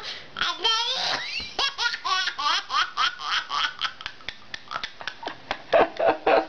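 A toddler laughing in a long run of short laugh bursts, about three a second, with high squeals about a second in.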